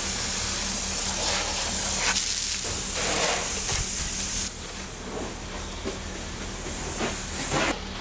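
Garden hose spray nozzle running water with a steady hiss, first jetting into a plastic wash bucket to work up suds, then spraying over a car. The hiss turns softer about halfway through.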